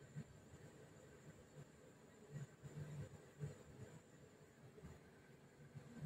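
Very faint, steady airflow and hum from an old ceiling-ducted air conditioner blowing through its supply grille, with a few faint low bumps in the middle. The speaker takes the unit for worn out and due for replacement.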